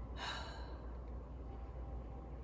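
A single short breath or sigh near the start, about half a second long, over a faint steady low hum.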